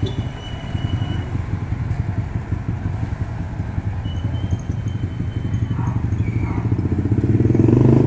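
Small motorcycle engines of tricycles (motorcycles with sidecars) running on the street, a steady low rumble that grows louder near the end as one comes close.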